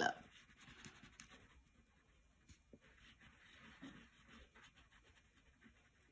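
Faint scratching of a wax crayon rubbed over paper while colouring in a drawing.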